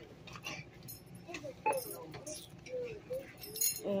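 Scattered small clicks and clinks of items and packaging being handled at a checkout counter, with faint voices in the background.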